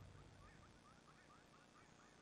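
Near silence as the last of the music fades out, with a run of faint, quick chirps through the middle.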